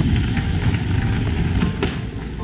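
Small wheels of a rolling bag rumbling steadily over paving stones, with scattered clicks from joints in the pavement.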